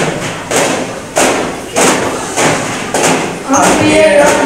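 Daffs (frame drums) struck together in a steady rhythm, a beat about every two-thirds of a second, with group singing coming back in near the end.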